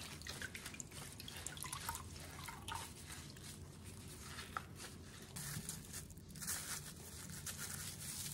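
Water dripping and splattering into the sink as gloved hands wring brine out of salted napa cabbage, in short irregular drips and squelches. About six seconds in, a crinkly rustle takes over.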